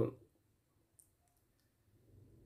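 Near silence after a spoken word trails off, with one faint click about a second in.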